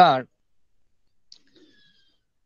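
A voice ends a word with one short syllable at the start, then near silence with a faint click a little past the middle.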